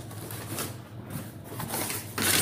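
Faint rustling and light scraping of a hand reaching into a cardboard box to take out its contents, over a low steady room hum.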